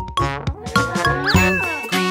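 Bright cartoon sound effects, a ding right at the start followed by tinkling chimes and a short swooping tone, over children's background music.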